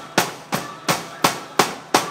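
Acoustic drum kit played live: a run of hard, evenly spaced hits, about three a second, each ringing briefly.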